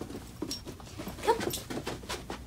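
An 11-week-old comfort retriever puppy giving short whines, the loudest about a second in, among light clicks and taps.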